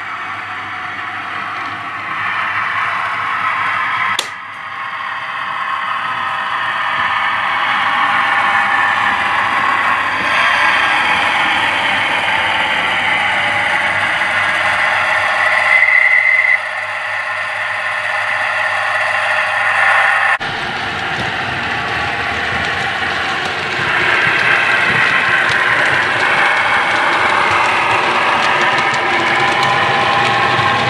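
OO gauge model train running: the locomotive's electric motor and gears whirring and the wheels running on the track, continuous throughout, with a single click about four seconds in.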